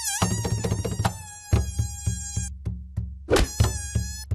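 Cartoon mosquito whine: a high buzzing tone that wavers and dips in pitch, breaking off and starting again, over background music with a steady beat. A short, sharp sound comes about three and a half seconds in.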